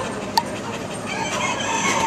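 Boxer dog panting, with a single sharp click about a third of a second in.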